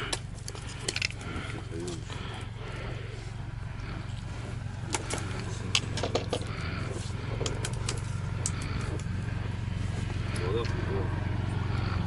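Faint, indistinct voices over a steady low hum, with scattered small clicks and knocks.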